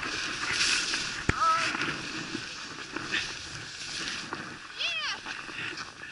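Snowboard sliding and scraping over soft, tracked-up snow, with one sharp knock about a second in.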